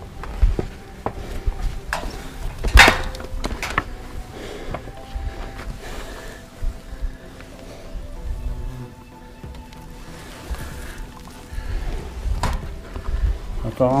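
Footsteps and knocks on a metal roof and against a stone chimney, with camera handling and wind rumble on the microphone. One loud sharp knock comes about three seconds in, and smaller knocks are scattered through the rest.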